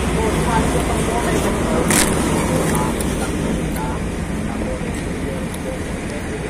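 Steady low rumble of vehicle noise with faint voices in the background, and a single sharp click about two seconds in.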